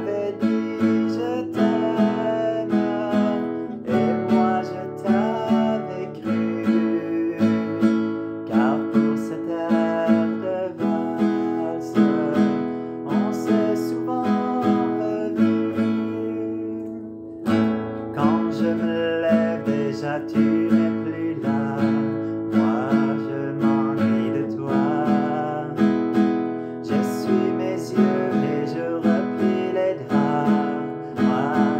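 Acoustic guitar strummed in a steady rhythm while a man sings along. The strumming falls away briefly about halfway through, then starts again.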